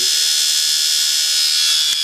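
Brushed electric motor running steadily with a high-pitched whine and buzz.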